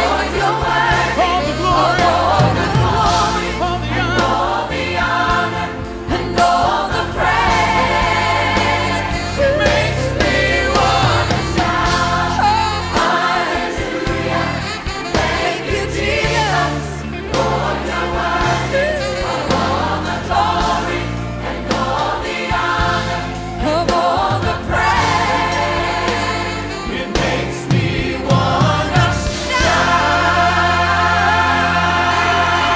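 Worship choir singing a praise and worship song with instrumental backing, continuously.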